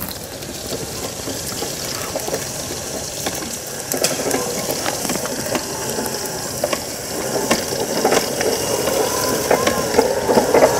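Tracked all-terrain power wheelchair driving over sandy, littered ground: its electric drive motors run and its rubber tracks clatter and click, growing louder as it comes closer. Near the end the motor gives a short rising-and-falling whine.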